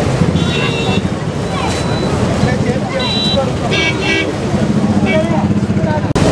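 Crowd chatter and traffic noise, with vehicle horns giving about five short toots.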